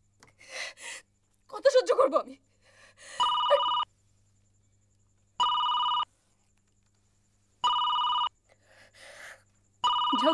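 Telephone ringing: three short, steady electronic rings about two seconds apart, with a fourth starting at the very end. A few spoken words come before the first ring.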